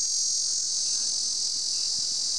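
A steady, high-pitched chorus of insects, a continuous shrill buzz with no breaks.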